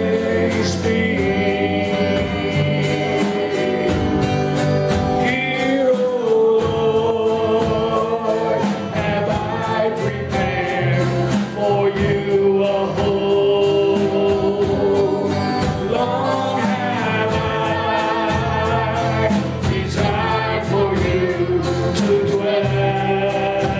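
A live worship song: a woman sings the lead into a microphone, accompanied by a strummed acoustic guitar, with held, wavering notes and a steady strumming rhythm.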